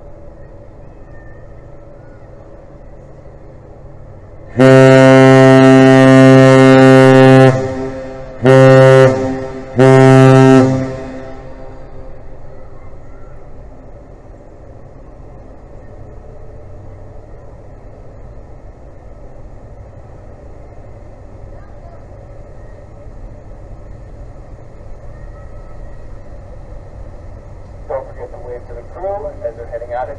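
Great Lakes freighter's deep horn sounding the long-short-short master's salute: one long blast of about three seconds, then two short blasts, the customary salute of a ship leaving port.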